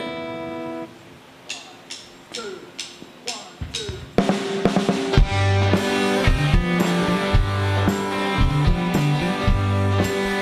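A rock band starting a song: a held note dies away, a few evenly spaced clicks count in, and about four seconds in the drum kit, bass and electric guitars come in together and play on.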